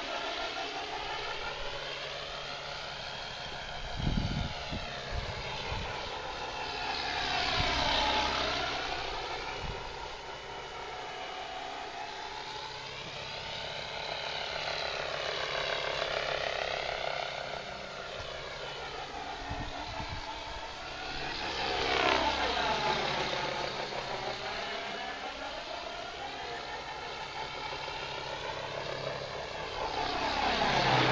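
Electric RC helicopter (FunCopter V2 with a Hughes 500 body) flying: a motor and rotor whine whose pitch keeps sliding up and down as it manoeuvres, growing louder twice as it passes close. There are a couple of brief low thumps.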